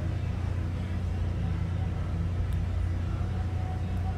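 A steady low rumble of background noise, with a faint click about two and a half seconds in.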